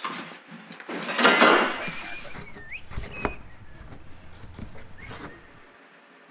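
Rigid foam being shaved by hand into shims: a loud rough scraping squeak about a second in, then a short squeak and a couple of sharp knocks, followed by quieter handling noises.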